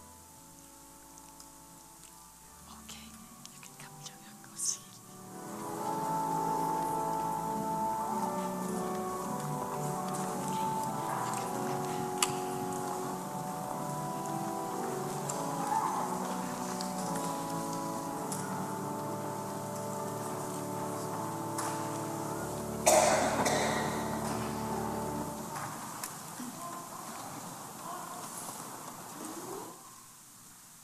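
Soft organ music in held, sustained chords begins about five seconds in and fades away near the end. A short burst of noise, the loudest moment, cuts across it about 23 seconds in.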